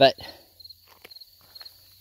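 Crickets chirping faintly in a steady pulsed rhythm, with a few soft clicks, after one short spoken word.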